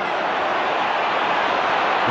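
Steady hubbub of a large football stadium crowd during open play, with no single chant or cheer standing out.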